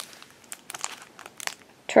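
Clear plastic wrapper around a block of Sculpey III polymer clay crinkling as it is handled, a run of irregular crackles that picks up about half a second in.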